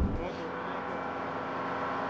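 Aircraft turbine engines running steadily, a continuous hum with several fixed tones held over a faint rushing noise.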